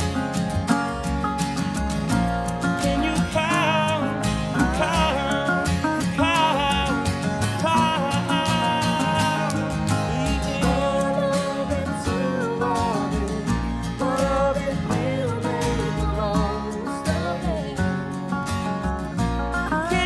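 Live acoustic band playing at a steady, even loudness: strummed acoustic guitar, accordion, upright bass and resonator guitar over a steady beat, in a country-folk style.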